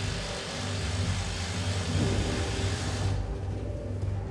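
Hydraulic rock drill on a tunnel drilling rig boring a blast hole into the rock face, a dense steady drilling noise over the rig's low machine hum. About three seconds in the drilling noise stops and only the hum carries on, as the hole is finished.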